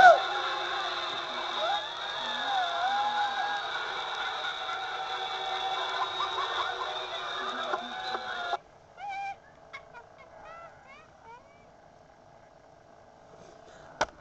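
Sounds of animated Halloween props, several overlapping wavering moans and voice effects, played back through a portable DVD player's small speaker. About eight and a half seconds in it cuts abruptly to a quieter run of short rising chirps.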